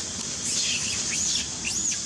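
A bird's quick chirping calls, a run of short rising-and-falling whistles starting about half a second in and ending with one arching note near the end, over a steady high insect hiss.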